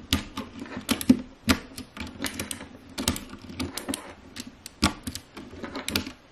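Round plastic keycaps on a mechanical keyboard with blue switches being pulled off the switch stems by hand and set down on a desk. Irregular sharp plastic clicks and clacks, a few a second.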